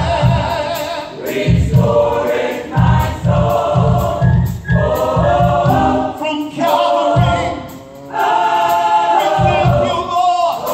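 Gospel mass choir singing in full harmony over instrumental accompaniment with a steady low beat of about two pulses a second, which drops out briefly about eight seconds in.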